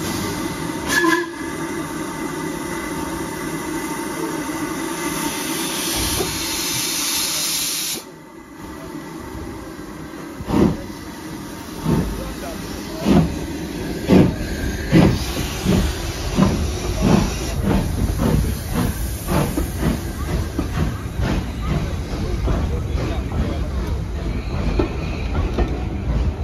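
LMS Ivatt 2-6-2T tank locomotive standing with a steady hiss of escaping steam. After a cut, a steam locomotive pulls away: slow exhaust beats start, about one a second, and quicken to nearly two a second as the coaches roll by with a rising rumble.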